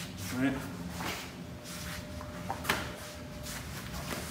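A few brief swishes and soft knocks from arms and uniforms as punches are thrown and blocked, with feet shuffling on foam floor mats.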